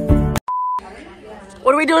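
Background music with a steady beat cuts off suddenly, and a single short, steady beep sounds just after. A voice begins speaking near the end.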